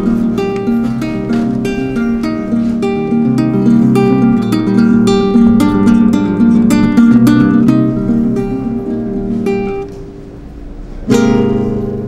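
Acoustic guitar played up close, a steady run of quickly plucked notes and chords. The playing falls away briefly about ten seconds in, then comes back louder.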